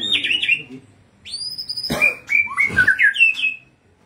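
A songbird singing: clear whistled phrases, a rising whistle in the middle, then a quick run of twittering notes with a sharp click among them.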